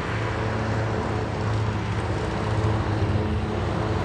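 Steady outdoor background noise: a low hum under a broad rushing sound, typical of distant road traffic.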